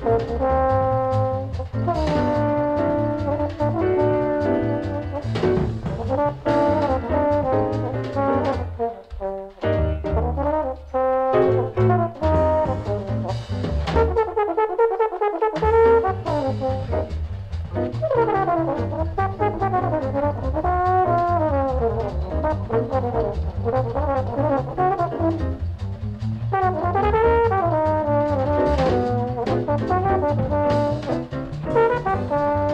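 Live small-group jazz: a brass horn carries the melody in running phrases over walking bass and drums with cymbal strokes, at an up tempo.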